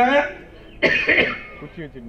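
A man's voice over a microphone, then a throat clearing about a second in, short and noisy, lasting about half a second.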